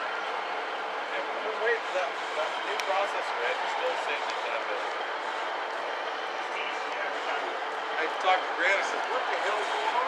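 Background voices of people talking at a distance over steady outdoor noise.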